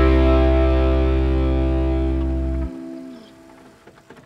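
The song's final chord ringing out on guitar and fading away. The deep bass note stops suddenly about two-thirds of the way through, and the remaining notes die out near the end.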